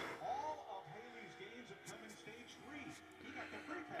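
Faint voices from a television race broadcast, the commentary playing quietly in the room.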